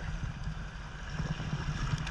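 Shallow mountain river rushing over stones, heard close to the water surface, with water moving around the legs of someone wading across.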